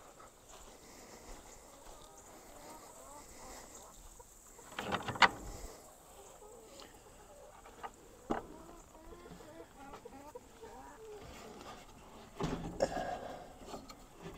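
Backyard chickens clucking softly, with a few sharp knocks about five seconds in and a single shorter one about three seconds later.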